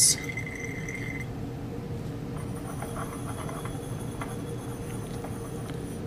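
Steady low hum with a few faint, light ticks as a glass burette's stopcock is worked and an Erlenmeyer flask is handled and swirled. There is a short, sharp click right at the start.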